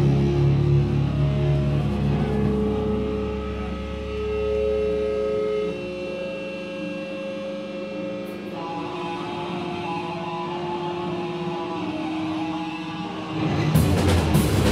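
Electric guitar notes and amp feedback held and ringing through the amplifiers, with no drums, the pitch shifting every couple of seconds. The low bass note drops out about halfway through. The full band comes back in loud just before the end.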